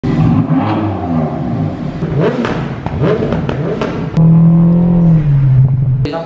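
BMW M4's twin-turbo straight-six being revved in blips, with a few sharp pops from the exhaust. It is then held at a steady higher speed for about a second before dropping to a lower one.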